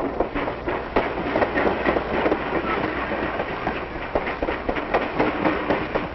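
Train passing, its wheels clattering over rail joints in a rapid, uneven run of clacks over a steady rumble.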